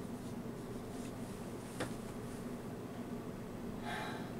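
Dry-erase marker writing on a whiteboard: soft, faint strokes over a low room hum, with one sharper tick about halfway through.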